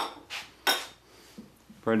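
A china dinner plate with a fork on it being set down on a wooden dining table: a few short clinks of plate and cutlery, the loudest a little under a second in, then a couple of faint knocks.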